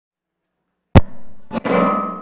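A sharp click about a second in, then a second click and a short burst of music that rings out and fades.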